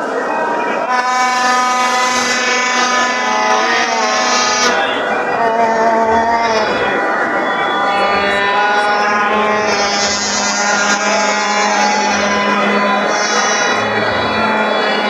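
Plastic stadium horns (vuvuzelas) blown in long, steady held notes that overlap one another, over the chatter of a large crowd.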